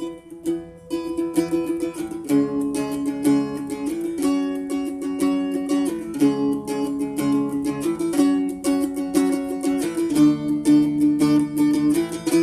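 A four-string First Act children's acoustic guitar in open A tuning, played with a slide: fast picking over held, sliding notes in an instrumental passage.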